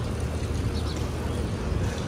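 City street ambience: a steady low rumble of traffic.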